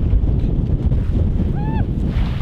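Strong wind buffeting the camera microphone, a loud, uneven low rumble, with a brief voiced exclamation near the end.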